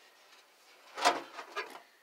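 A painted car body panel tipped up and two microfiber towels sliding off its freshly waxed surface, with a brief knock about a second in.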